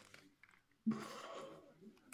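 A short breathy voice sound, a murmured syllable, about a second in, after a quiet start with a few faint clicks.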